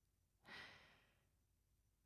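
One soft breath from a man, starting about half a second in and fading away within half a second: a slow deep breath taken to calm down before sleep.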